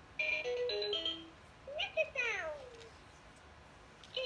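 Electronic caterpillar toy playing a short jingle of beeping notes that step down in pitch, then a recorded sound that slides downward.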